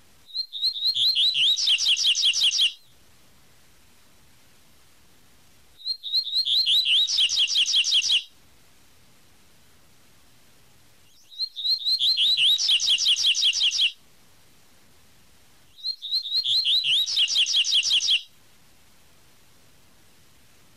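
Double-collared seedeater (coleiro) singing its 'tui tui' song: four phrases of about two and a half seconds each, every one a fast run of high repeated notes, separated by pauses of about three seconds.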